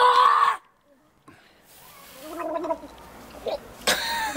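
A boy gagging and groaning from the burn of a hot piri piri pepper: a loud, rough retch at the start, a pause and a breath, then a wavering groan, with another loud retch at the end.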